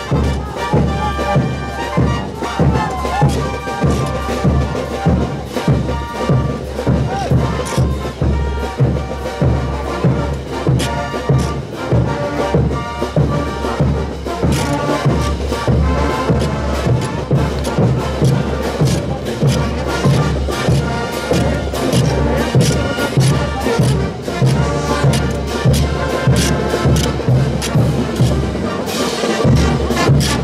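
Brass band with drums and cymbals playing festival dance music, with a steady beat of about two strikes a second.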